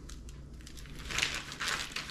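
Plastic packaging crinkling in a short run of rustles about a second in, as a fish fillet is pulled out of the bag.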